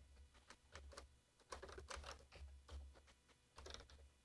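Computer keyboard typing: faint, irregular keystrokes as a line of code is entered.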